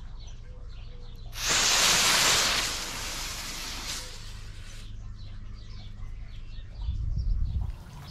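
Four clip-on firework igniters wired in parallel firing together on one cue, a sudden hiss of burning starting about a second and a half in that is loud for about a second and then dies away. All four lit, so the firing system handled four igniters on one cue. Faint birdsong behind.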